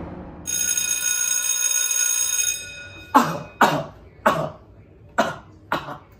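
A steady high ringing tone lasting about two seconds, then a person coughing five times in quick succession.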